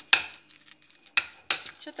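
A spoon knocking against a glass mixing bowl three times while a cauliflower mixture is mixed, the first knock just after the start and two more close together about a second later.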